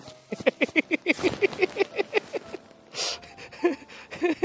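A person laughing, a quick run of short ha-ha sounds about five a second, with a sharp breath about three seconds in.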